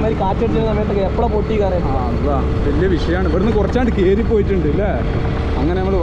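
A man talking over the steady low rumble of a moving motorcycle, with engine and wind noise on the rider's microphone.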